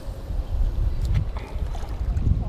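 Wind buffeting an action camera's microphone: an uneven low rumble that swells and dips, with a few light clicks about a second in.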